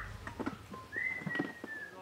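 A bird's clear whistled call in forest ambience: a short note at the very start, then a longer note about a second in that slides slightly downward for about a second.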